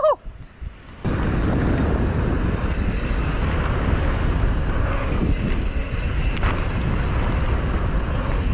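Wind rushing over a helmet-mounted camera microphone, with mountain-bike tyres rolling fast on a hard-packed dirt jump trail. After a quieter first second it comes back suddenly and holds steady.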